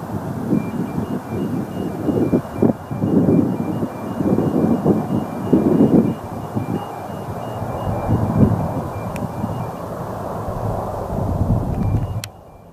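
Lockheed C-130 Hercules' four Allison T56 turboprop engines climbing away after a touch-and-go: a low rumble that swells and dips unevenly, with wind buffeting the microphone.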